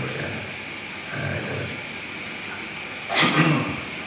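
A pause in a man's talk through a microphone: steady low room noise, with a brief vocal sound from him about three seconds in.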